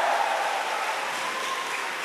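Large theatre audience applauding, the applause slowly fading.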